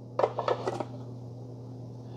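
Plastic coffee-grounds container and its snap-on lid from a burr grinder being handled: three or four light clicks and taps in the first second as the lid is fitted and moved. A faint steady low hum lies underneath.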